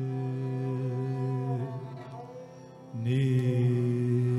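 Hindustani classical music: a harmonium holding a steady drone under a sustained singing voice, with a few small pitch bends. It sinks briefly, then comes back louder about three seconds in.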